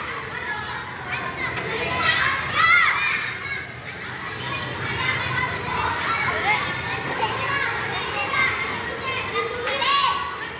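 Many elementary-school children playing, their voices a continuous babble of calls and shouts, with a louder high-pitched shout between two and three seconds in.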